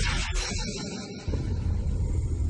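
Animated fight sound effects: two short, sharp noisy rushes, one at the start and one about half a second in, then a heavy low rumble, over background music.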